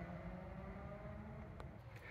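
Quiet room tone: a faint steady low hum, with a single soft click about one and a half seconds in.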